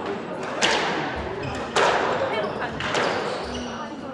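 Squash rally: the ball is struck by rackets and hits the court walls, giving three sharp strikes about a second apart, each ringing in the court, the last one fainter. Short squeaks of court shoes on the wooden floor come between the strikes.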